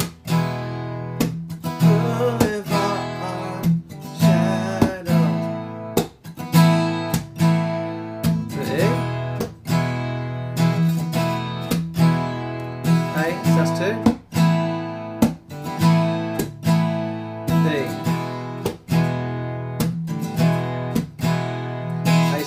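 Steel-string acoustic guitar strummed in a steady rhythm, moving between A sus2 and E chords.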